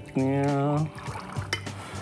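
A short, steady held vocal note, then a soft trickle of water poured from a cup into a glass holding a pinch of super-absorbent powder.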